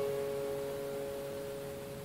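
Acoustic guitar with two clear, pure notes left ringing and slowly fading away, and no new notes played over them.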